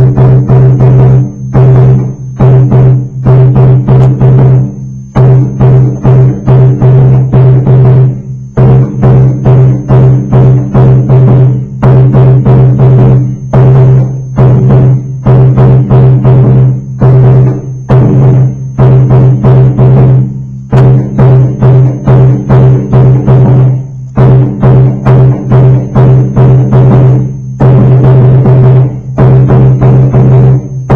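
Surdo de terceira (samba bass drum) played solo with a mallet and a muting hand: a loud, busy, syncopated run of deep, pitched strokes, broken now and then by short pauses. These are the free, varied figures the third surdo plays between the steady beats of the first and second surdos.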